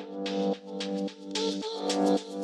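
Electronic intro music: held chords under a steady beat.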